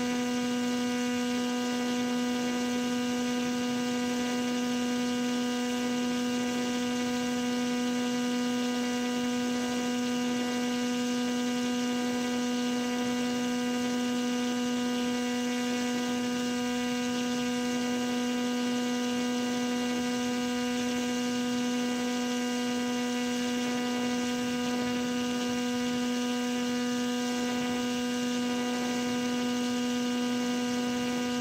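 Motor and propeller of a radio-controlled paramotor model running at a constant throttle in flight, a steady pitched drone with many overtones.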